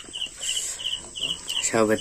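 A cricket chirping steadily in short, high-pitched chirps, about three a second.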